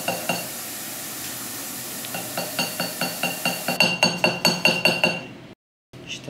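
Small hammer tapping a metal bar on a bench block, working a hammered texture into it. There are two ringing strikes at the start, a short pause, then a quick run of light metallic taps, about five a second, from about two seconds in. The sound cuts out briefly near the end.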